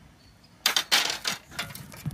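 Metal serving spoon scraping and clinking against a cast iron skillet as stir-fried food is scooped out, in a few short bursts from about half a second in.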